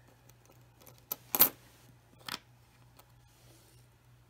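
Pennies clinking against each other as a coin is picked out of a row of loose pennies: a few sharp clicks, the loudest about a second and a half in and another just after two seconds.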